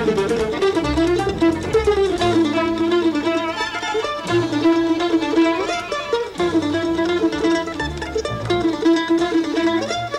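Live acoustic string band playing a fast instrumental tune: a mandolin takes the lead with quick picked runs over upright bass and drums, with fiddles in the band.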